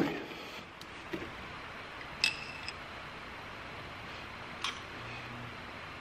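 Faint clicks and one short metallic clink about two seconds in, as engine pushrods are handled and pushed into a cardboard box, over quiet room tone.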